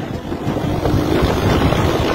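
Motorcycle engine running while riding at speed, with wind buffeting the microphone.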